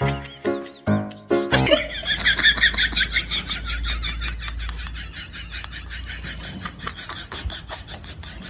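A few short piano notes, then a small dog's rapid string of high-pitched whines and squeals as it licks a man's face, over a low rumble of handling noise.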